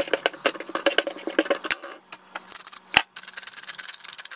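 A table knife cuts avocado and scrapes it across toast on a ceramic plate, with a run of quick clicks and scrapes and one sharper knock of the blade about three seconds in. A finer, faster grating fills much of the second half.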